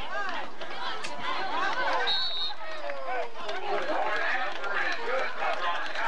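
Several spectators talking at once in indistinct chatter, with a brief high steady tone about two seconds in.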